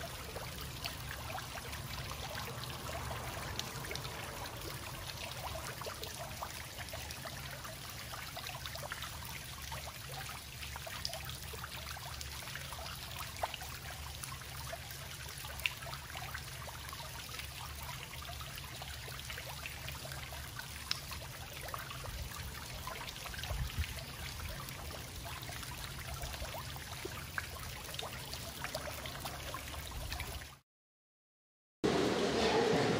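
Tiered stone courtyard fountain running, water trickling and splashing steadily into its basin, over a steady low rumble.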